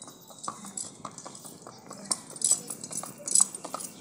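Horse's hooves striking asphalt at a trot: a quick, irregular run of sharp clip-clops, about three or four a second.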